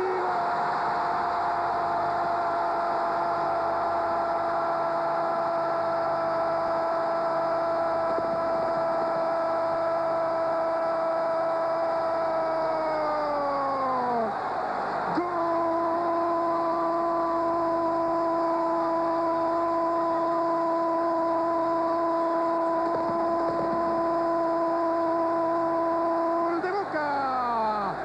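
Spanish-language football commentator's goal cry. A first 'gol' is held on one steady pitch for about fourteen seconds and falls away at the end, then after a brief breath a second held cry lasts about twelve seconds.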